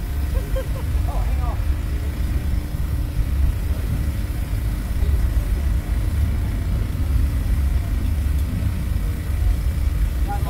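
A Slingshot ride capsule held on its launch pad: a steady low rumble with a faint steady hum.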